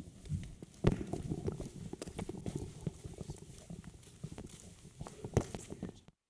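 Wireless microphone being handled: irregular knocks, clicks and rubbing, with a sharp knock about a second in and another near the end. The mic has been cutting in and out.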